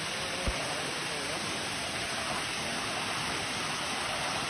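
Small waterfall spilling over a low rock ledge into a creek pool, a steady rushing of water.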